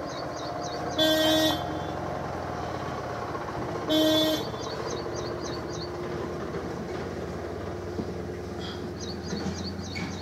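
A vehicle horn honks twice in short blasts of about half a second, one about a second in and the next about three seconds later, over a steady hum. Short runs of high, quick chirps come and go in between.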